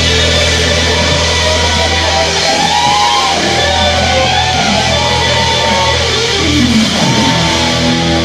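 Live rock jam: an electric guitar lead with bent notes over bass and drums, one long note sliding down in pitch near the end.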